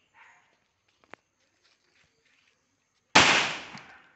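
A firecracker goes off with a single loud bang about three seconds in, set off by the burning charcoal in a coconut-husk fire pot; the noise dies away over most of a second.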